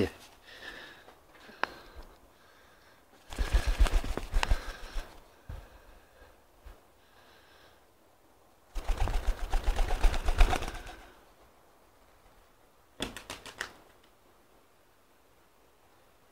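Pigeon's wings flapping in quick clattering beats, in three bursts: two of about two seconds each and a short one later.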